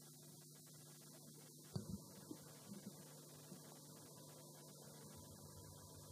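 Near silence: a steady low electrical hum, with a few faint knocks about two seconds in.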